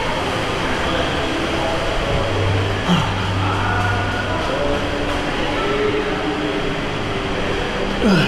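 Steady, loud background din of an indoor water park, echoing off tiled walls, with faint distant voices; a short sharp knock about three seconds in.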